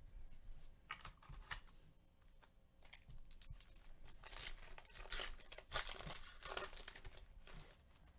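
A foil trading-card pack crinkling and tearing as it is ripped open by hand, faint throughout. A few short soft rustles of cards being handled come first, and the denser crinkling of the wrapper begins about halfway through.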